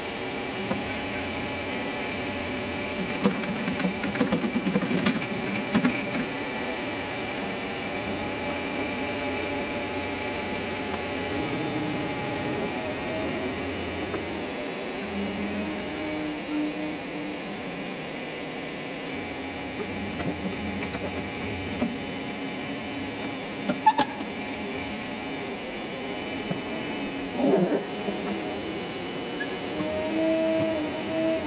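Heavy diesel engine running steadily at low revs, a constant hum with a buzzing edge. Scattered knocks and clanks come a few seconds in and again near the end.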